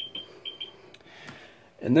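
Geiger counter giving a few short, high-pitched beeps, each one a detected count, with a soft breath before speech resumes near the end.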